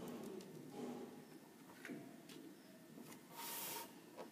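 Quiet room with faint handling sounds on a tabletop: a couple of soft taps about two seconds in and a brief hiss near the end.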